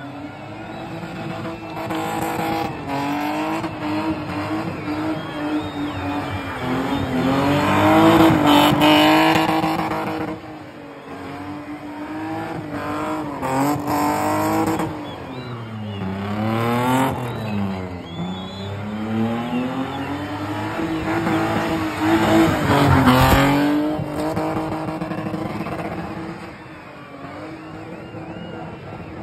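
BMW E30's engine held at high revs as the car spins in circles, with tyres screeching against the tarmac. The revs sag and climb back a few times, most deeply a little past the middle.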